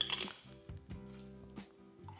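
Metal kitchen tongs clinking against a glass mason jar as blocks of feta are set inside: one sharp clink at the start, then a few soft knocks. Quiet background music plays underneath.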